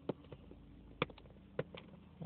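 A few faint clicks and taps from fingers handling a cardboard box, the sharpest about a second in.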